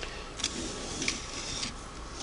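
Light knocks and scraping of a Singer 301A sewing machine being turned around by hand on a tabletop, with a few small clicks spread through it.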